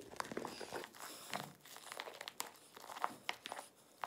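Metal spatula stirring a foamy mix of shaving cream and melted marshmallow in a glass bowl: faint, irregular squishing and crackling with many small clicks.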